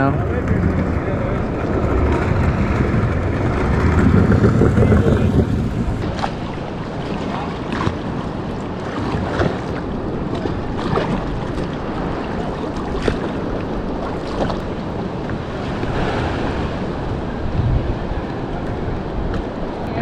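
Shallow seawater sloshing and splashing right at the microphone, with irregular small splashes throughout. A louder rumble of wind and water fills the first few seconds.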